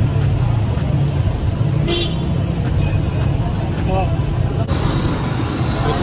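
Busy street noise: a steady traffic rumble with car horns tooting and voices of people nearby.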